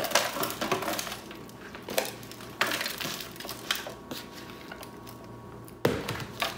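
Pre-moistened potting soil poured from a plastic tub into an aluminum roasting pan: soft rustling with a few scattered knocks, and one sharp knock near the end.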